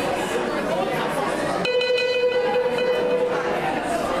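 Electronic keyboard playing long held notes, with a new chord coming in about halfway through, under the chatter of an audience.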